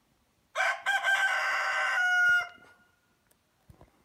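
A rooster crowing once, loud and close: a single call of about two seconds starting about half a second in, trailing off at the end.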